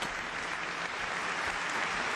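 Large seated audience applauding steadily, a continuous wash of many hands clapping.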